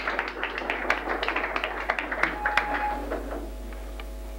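Small audience applauding in a small room: a dense patter of hand claps that thins out and stops about three seconds in, leaving a steady mains hum.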